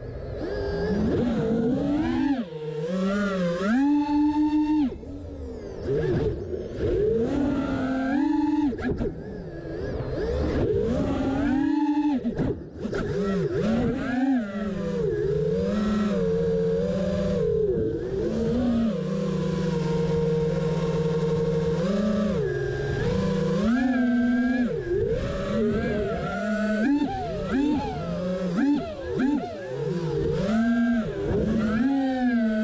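FPV quadcopter's brushless motors and propellers whining, heard from a GoPro mounted on the quad. The pitch rises and falls over and over with the throttle, and holds steady for a few seconds past the middle. One channel of its 4-in-1 ESC is failing, which the pilot thinks keeps one motor from reaching full power at full throttle.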